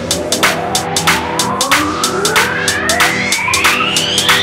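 Electronic dance track (dubstep remix) in a build-up: a synth riser glides steadily upward in pitch over a steady drum beat and held bass notes.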